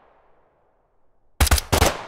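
Designed automatic rifle gunfire built in Krotos Weaponizer from its M4 automatic and M16 presets. The echoing tail of an earlier shot fades out, and about one and a half seconds in a quick burst of several shots goes off, each ringing out in a long reverberant decay.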